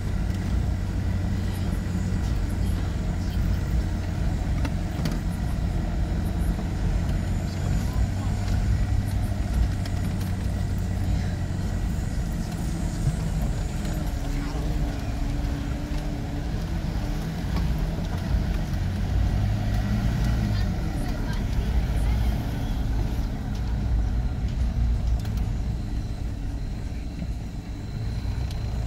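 Vehicle engine and road noise heard from inside a car driving along an unpaved dirt road: a steady low rumble.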